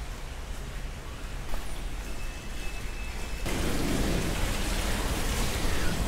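Steady rushing noise with a low rumble and no clear single event, stepping up louder about three and a half seconds in.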